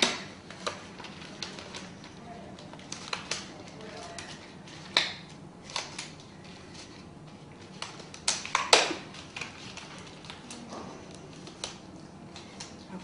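Examination gloves being pulled on and worked over the fingers: irregular rubbery snaps and rustles, the loudest a little past two-thirds of the way through.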